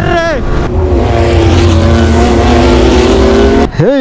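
Yamaha R15 V3 motorcycle engine running hard at high revs, its pitch rising slowly as it accelerates, with heavy wind and road rush. It stops abruptly near the end.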